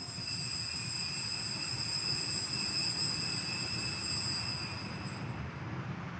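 Altar bells ringing in a steady high shimmer while the chalice is elevated at the consecration, stopping about five seconds in.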